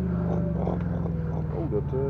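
Engine of an aerial work platform running steadily, its pitch settling slightly lower just after the start.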